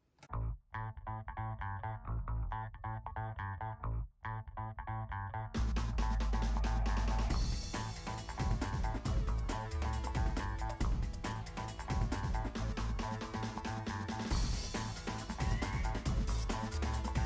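Background music with a steady beat: a thinner opening that grows fuller and louder about five and a half seconds in.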